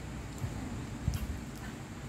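Faint chewing of crisp fried dried fish, with a couple of soft clicks from the mouth over a low background hum.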